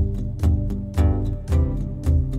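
Instrumental passage of an acoustic guitar being strummed over a cajon. The cajon's deep bass hits keep a steady beat about twice a second, with lighter slaps and strums in between.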